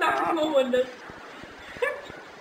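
A high-pitched cry that falls in pitch, lasting about a second, with a short rising call near the end.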